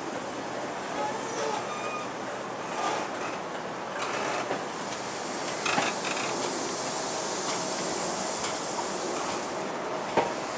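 Mark 3 passenger coaches of a departing train, hauled by a class 90 electric locomotive, rolling past at low speed: a steady rumble and hiss of wheels on rail, with a few short clunks.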